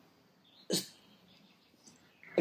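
A woman's short, breathy vocal sound, heard once a little under a second in; otherwise quiet room tone.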